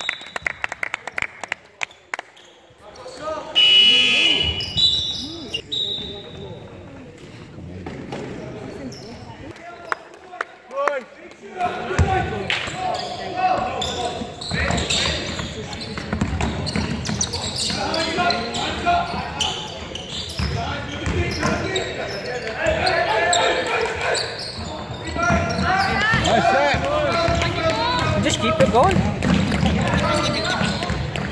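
Basketball game sounds in a large sports hall: a ball bouncing on the floor and indistinct voices of players and bench, busier from about twelve seconds in. A brief shrill tone about four seconds in is the loudest sound.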